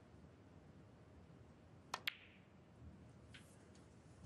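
A snooker shot: the cue tip strikes the cue ball and, a split second later, the cue ball clicks into an object ball, about two seconds in. A few faint knocks of the balls follow near the end, over the hush of the arena.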